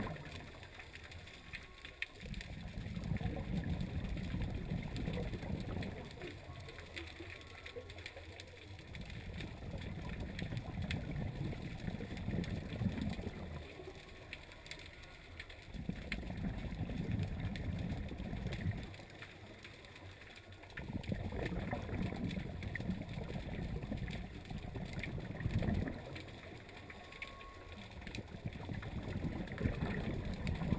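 Scuba breathing through a regulator underwater: bursts of exhaled bubbles rumble and gurgle for a few seconds at a time, about five times, roughly every six seconds, with quieter inhalation gaps between.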